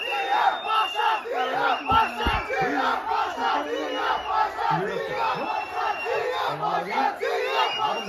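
A packed cinema crowd of fans yelling and cheering together, loud and without a break.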